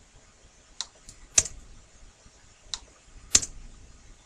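Computer keyboard keys pressed one at a time while commas are deleted from a long number: about five separate clicks with gaps between them, two of them louder.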